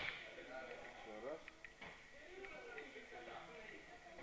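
Faint, indistinct voices talking in the background, with a few small clicks and a light knock about two seconds in.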